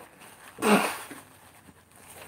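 A man's single breathy exhale about half a second in, a short hiss with a faint falling voiced tone under it.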